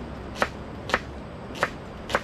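Kitchen knife chopping on a wooden cutting board: three sharp chops about half a second apart.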